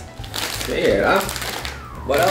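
A plastic snack bag crinkling as it is picked up off the table, over a brief voice sound and music.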